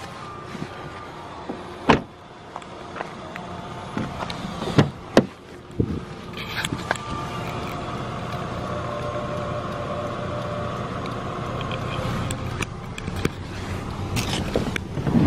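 Handling noises inside a parked car: a few sharp knocks and clicks, the loudest about two seconds in and a cluster around five seconds in, over a steady low hum.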